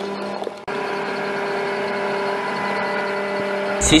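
Armoured military vehicle's engine running with a steady, even drone, cut off briefly about two-thirds of a second in.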